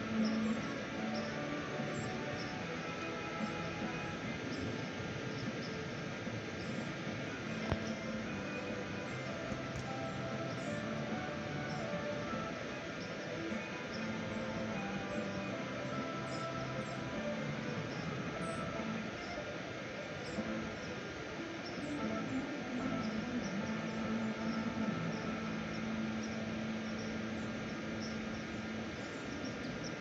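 Christmas light-show speaker playing a song, sustained notes changing every second or so over a steady background hiss, with short high chirps recurring throughout.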